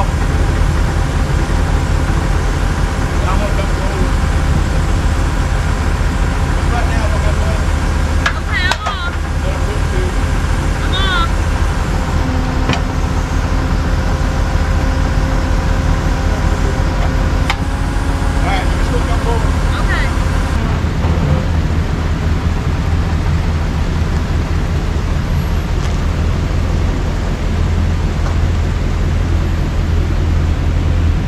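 A vehicle engine running at a steady idle, a constant low drone with a few faint short squeaks over it.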